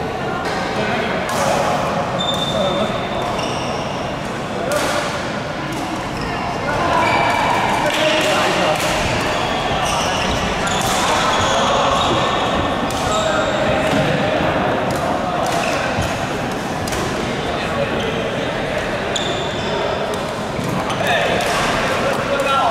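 Badminton play in a large, echoing hall: repeated sharp racket strikes on the shuttlecock and short high shoe squeaks on the court floor, over a steady murmur of voices.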